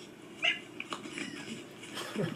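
A brief, high-pitched vocal cry about half a second in, followed by faint scattered sounds.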